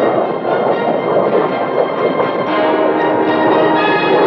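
Orchestral film score over a dense, noisy rush of sound, with held brass chords coming in strongly about two and a half seconds in.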